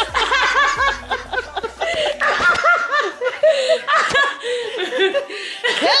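A woman laughing hard, in quick repeated bursts.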